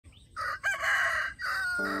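A rooster crowing once, a call in several parts ending on a drawn-out, falling note. Music comes in just as the crow ends.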